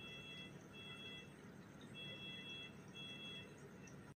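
Hospital bedside equipment alarm beeping faintly, a steady multi-pitched tone in pairs of half-second beeps that repeat about every two seconds, over a steady low hum.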